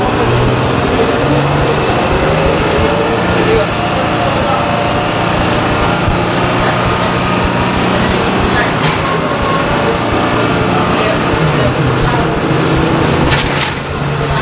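Detroit Diesel 6V92 two-stroke V6 diesel of a 1993 Orion V transit bus heard from on board, running steadily under way. Its pitch eases down over the first few seconds, then holds. There is a short rattle near the end.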